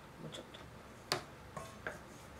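Cooking chopsticks clicking against a stainless steel mixing bowl while egg and flour are stirred into a batter: about four sharp clicks, the loudest about a second in.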